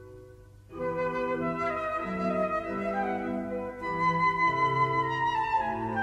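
Baroque chamber music: a flute playing an ornamented obbligato melody over a basso continuo bass line, in an instrumental passage of a tenor aria. It comes in after a brief lull about half a second in.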